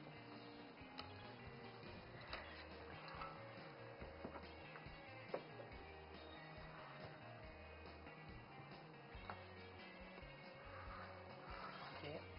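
Soft background music with a slow, stepping bass line. Over it come a few faint clicks of a spatula against a metal cake pan as a piece of cake is cut out, the sharpest about five seconds in.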